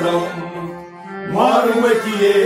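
Kashmiri Sufi devotional song: a harmonium holds steady chord tones under men's singing. A sung phrase fades, and a new one rises in about two-thirds of the way through.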